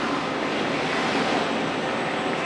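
Steady rushing noise of the restaurant's ventilation, the sound of air-handling and exhaust fans running in a pizza kitchen, even and unbroken.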